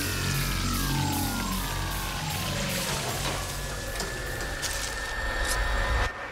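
Music: a run of falling, sliding notes over a steady low drone, cut off sharply at the end.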